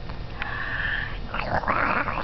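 Baby vocalizing: a high-pitched squeal a little under half a second in, then a breathy outburst near the end.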